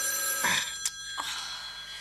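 Telephone bell ringing steadily as a radio-play sound effect, breaking off near the end.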